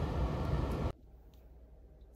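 Steady low rumbling background noise that cuts off abruptly about a second in, leaving near-silent room tone.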